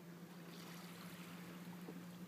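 Faint shoreline ambience: small waves lapping at the water's edge, under a steady low hum.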